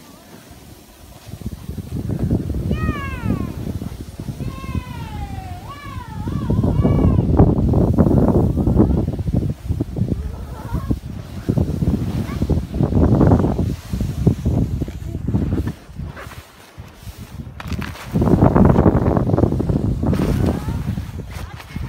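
Rushing noise of skis sliding over snow, coming in uneven surges. From about three seconds in, for a few seconds, a child's high voice gives several wavering, gliding cries.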